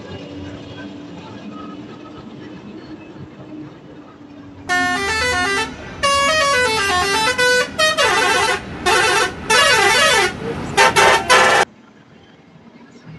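A truck's musical horn playing quick stepped runs of notes up and down in several loud blasts, starting about five seconds in and cutting off abruptly just before the end. Under it, a steady engine and road rumble.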